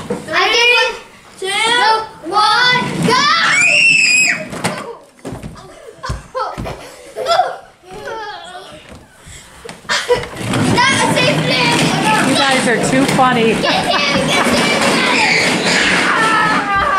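Young children shrieking and shouting excitedly in play, with a few knocks and thuds in a quieter stretch in the middle, then a loud jumble of children's voices for the last few seconds.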